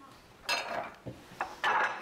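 Dishes and cutlery clattering in two short bursts about a second apart, with a light click between them.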